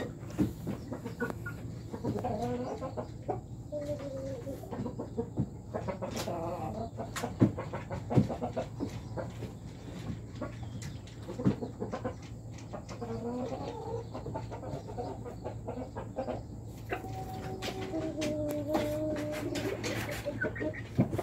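Young chickens clucking in short, repeated calls, with a longer, drawn-out call near the end.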